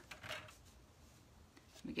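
Faint sliding and rustling of a sheet of patterned paper being shifted into position on a paper trimmer's base.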